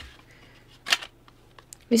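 Plastic back cover of a Samsung Galaxy S4 being pressed onto the phone: one short sharp click about a second in, then a few faint ticks.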